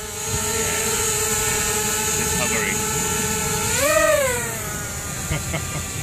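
Quadcopter drone's electric motors and propellers giving a steady whine in flight; about four seconds in the pitch rises and falls back as the throttle is briefly pushed up.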